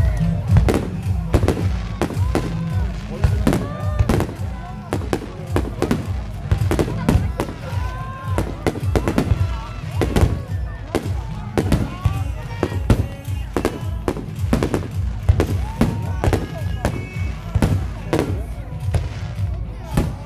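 Fireworks display: many shells bursting in quick succession, sharp bangs and crackles throughout, over loud background music.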